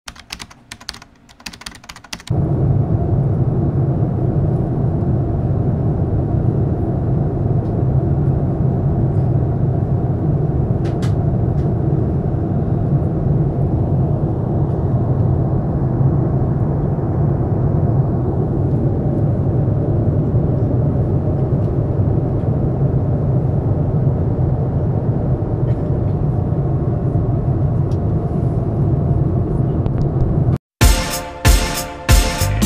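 Steady low cabin noise of a jet airliner in flight, heard from inside the cabin, after a short patter of clicks in the first two seconds.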